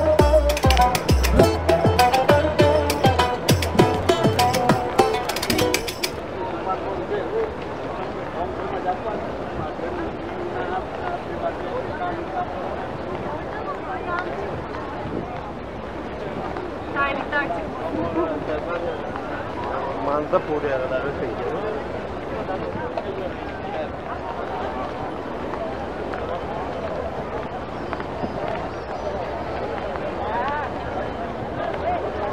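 Music with a heavy beat for about six seconds, cutting off suddenly. Then a crowd of many people talking at once in an open courtyard, with no one voice standing out.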